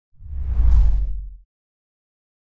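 Editing transition whoosh with a deep bass rumble, swelling up and dying away within about a second and a half.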